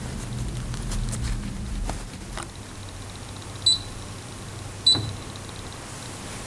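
Two short, high electronic beeps about a second apart from a computerized sewing machine's control panel, over faint rustling and handling of fabric.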